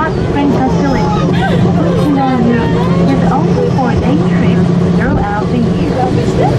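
Several people talking at once inside a crowded ropeway gondola, with a recorded English guide announcement mixed in, over a steady low hum.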